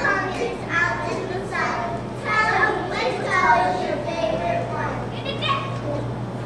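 Young children's voices speaking lines in several short phrases, over a steady low hum.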